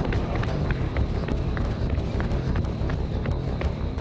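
Footsteps of a person running on a paved street, a quick irregular series of hard steps, over a low steady rumble.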